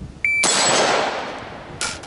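A shot timer's short start beep, then a single AR-15-pattern rifle shot with a long echoing tail. Near the end comes a shorter sharp knock.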